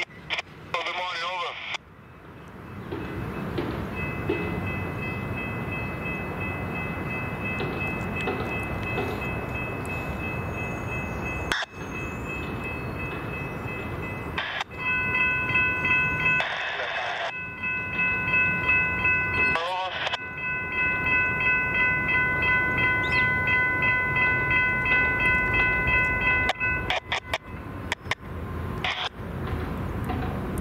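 Railroad grade-crossing warning bell ringing as the crossing activates for an approaching train. It starts a few seconds in, rings in a steady repeated pulse of about two strokes a second from about halfway, and cuts off suddenly near the end over low traffic rumble. Short bursts of radio scanner chatter break in a few times.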